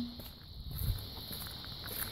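Quiet outdoor ambience: faint footsteps on concrete under a steady, high-pitched insect drone.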